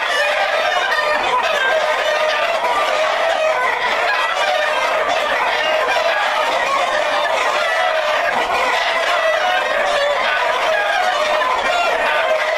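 A large flock of Black Jersey Giant chickens clucking and calling over one another in a steady, dense din.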